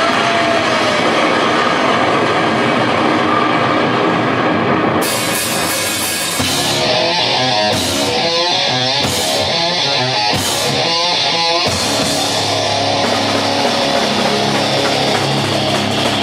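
Live rock band playing an instrumental passage on electric guitar, electric bass and drum kit. The sound fills out, with much more high-end cymbal sound, about five seconds in.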